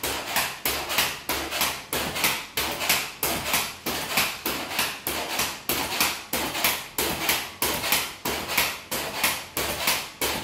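Pogo stick bouncing on a tiled floor: its foot strikes the tile in a steady rhythm, a sharp knock about twice a second.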